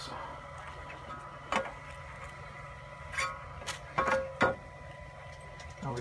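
Handling noise from a flexible magnetic 3D-printer build plate being bent and moved over bubble-wrap packing: a few short clicks and crinkles, bunched in the second half, over a faint steady high tone.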